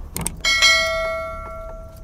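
A couple of quick mouse clicks, then a bright bell chime that rings and fades away over about a second and a half: the stock sound effect of a YouTube subscribe-button and notification-bell animation.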